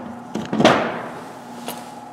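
Heavy steel harmonic balancer being handled and set down on a metal workbench. A short knock is followed, about two-thirds of a second in, by a loud metallic clang that rings and fades over about a second, then a few light clicks.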